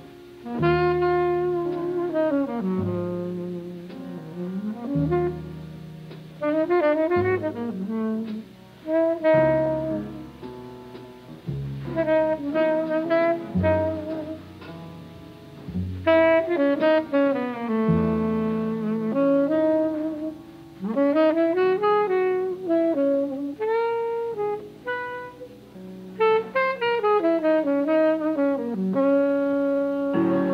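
Tenor saxophone playing a ballad melody that glides between long-held notes, over sustained piano chords and string bass, in a live 1950s jazz quartet recording.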